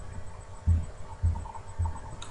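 Three soft, low thumps about half a second apart over a faint steady hum.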